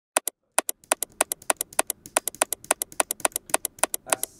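A small push-button switch clicked rapidly over and over, about seven sharp clicks a second, some in quick press-and-release pairs.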